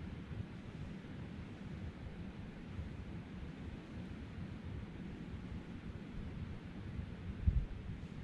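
Wind rumbling on the microphone, a steady low buffeting, with one louder low thump near the end.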